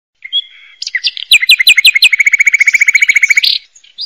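A songbird singing: a brief whistled note, a run of about six down-slurred notes, then a fast, even trill of repeated high notes that stops suddenly about three and a half seconds in.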